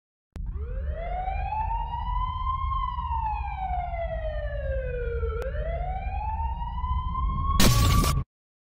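Siren wailing in a slow rise, fall and rise again over a low rumble, ending in a short loud burst of noise that cuts off abruptly.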